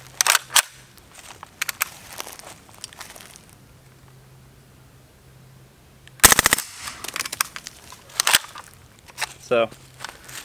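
Integrally suppressed MP5SD 9mm submachine gun firing one quick five-round full-auto burst about six seconds in, each shot a distinct pop. A few sharp clicks come before the burst and a few more after it.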